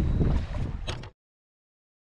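Wind buffeting the camera microphone in a low, steady rumble, with a sharp click just under a second in; about a second in the sound cuts off abruptly to dead silence.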